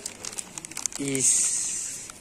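Plastic packaging crinkling as it is handled: a quick run of crackles, then a longer, higher rustle. A brief voice cuts in about a second in.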